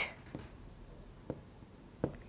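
Faint scratching of a pen on a writing board, with a couple of light taps.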